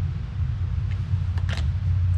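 A steady low hum, with two light clicks about one and a half seconds in as a small metal part and a tape measure are handled and set down on a wooden workbench.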